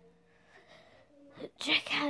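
About a second and a half of near silence with a faint steady hum, then a boy's breathy, whispery voice near the end as he starts to speak again.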